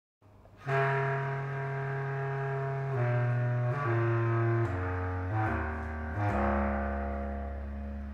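Bass clarinet and electric bass improvising together, starting just under a second in with long, low sustained notes that step downward in pitch.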